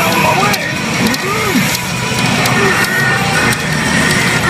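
Hana no Keiji pachinko machine playing a reach sequence: its soundtrack music with a character's voice lines and effects over it, and scattered clicks.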